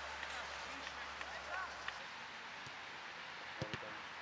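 Outdoor ambience at a football match: faint, distant players' voices, with two short thumps close together near the end.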